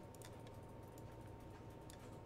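Faint, scattered clicks of a computer mouse and keyboard as words are selected and set in bold, over a low steady hum.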